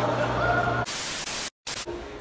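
Static-noise transition effect: a held electronic tone over a low hum is cut off a little under a second in by a loud burst of TV-style static hiss. The hiss drops out to dead silence for a moment, then gives one more short burst of static before the new scene's quieter room sound.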